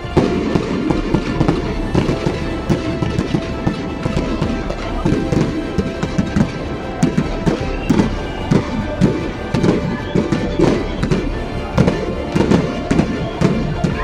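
Fireworks going off in rapid, irregular succession, a dense run of sharp cracks and pops throughout, with music playing along.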